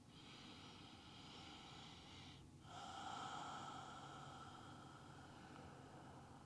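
Faint, slow breathing through the nose during a held yoga pose: two long breaths with a short pause between them, the second louder.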